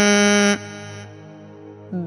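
A Buddhist monk chanting Sinhala seth kavi blessing verses holds one long steady note, which breaks off about half a second in. A faint steady tone lingers in the pause before the chant starts again at the very end.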